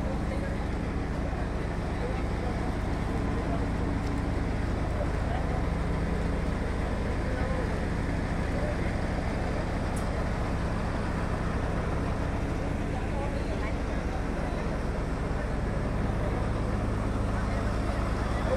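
Heavy vehicle engine running steadily with a constant low drone, with people's voices in the background.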